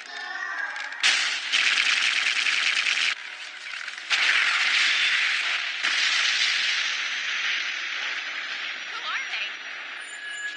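Rapid-fire shooting sound effects of an animated battle: two loud barrages of quick, machine-gun-like shots, each about two seconds long, then a long rushing noise that slowly fades.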